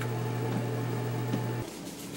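Steady low mechanical hum, like an appliance or exhaust fan running in a small room. It cuts off abruptly about one and a half seconds in, leaving faint room tone.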